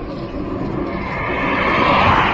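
A road vehicle approaching on the road, its tyre and engine noise growing steadily louder to a peak near the end.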